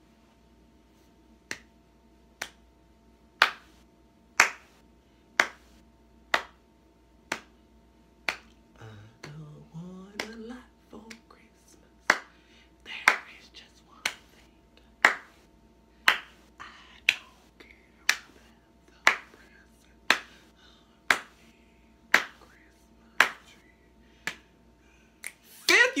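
Finger snaps keeping a slow, steady beat of about one snap a second. Quiet, mumbled singing comes between them, sung with the mouth barely open, and rises in pitch about a third of the way in.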